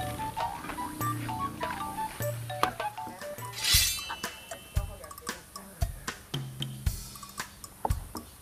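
Light background music, then, from about four seconds in, a Chinese cleaver chopping through raw pork belly onto a wooden cutting board, about one heavy chop a second.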